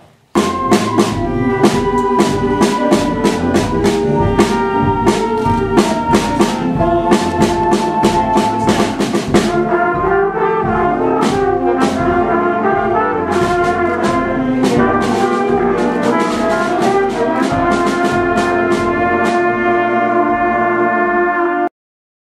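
School concert band of flutes, brass and drums playing a medley of patriotic tunes. The music starts suddenly and cuts off abruptly near the end.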